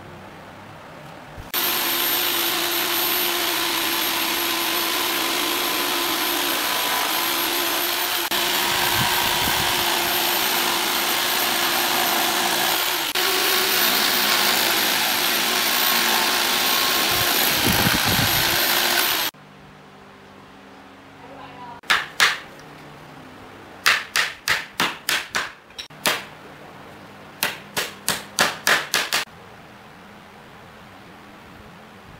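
Electric jigsaw cutting through pallet wood, running steadily for about eighteen seconds with a high whine, then stopping. A few seconds later a hammer knocks on the wood: two blows, a quick run of about seven, a single blow, then about six more.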